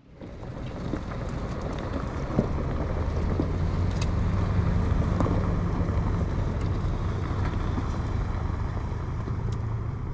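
Off-road vehicle driving a dirt track: a steady low engine drone and road rumble, with scattered sharp clicks and knocks and some wind noise on the microphone.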